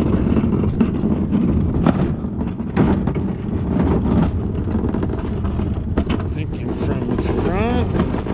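Casters of a loaded metal flatbed store cart rolling over wet concrete and asphalt: a steady rumble with irregular knocks and rattles. A short rising squeal comes near the end.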